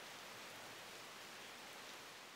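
Rain falling on wooden deck boards: a faint, steady, even hiss.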